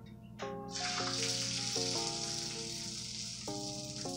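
Beaten egg sizzling on the hot plates of an electric waffle iron as it is poured in. The sizzle starts suddenly just under a second in and continues steadily, over light background music.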